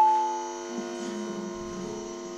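Electric guitar's last note dying away over the first half second, leaving the steady mains hum of the amplified guitar signal. A faint low rumble of handling comes near the end.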